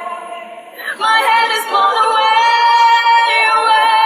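A woman's voice singing: a quieter, lower phrase, then about a second in one long high note, held steady to the end.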